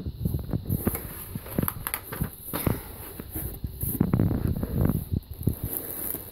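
Plastic-wrapped merchandise and packaging rustling and crinkling as items are moved around in a cardboard box, with irregular small knocks and thumps of handling.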